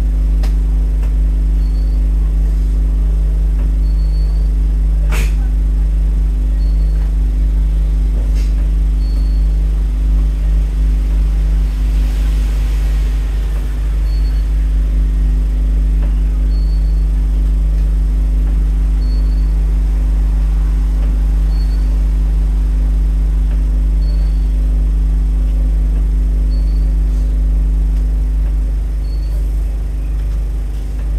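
Scania N230UD double-decker bus's five-cylinder diesel engine idling steadily, a low drone heard from the upper deck, with one sharp click about five seconds in.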